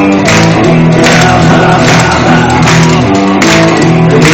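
Live blues-rock band playing loudly: electric guitars and bass over a drum kit, with cymbal and snare hits falling roughly every half second.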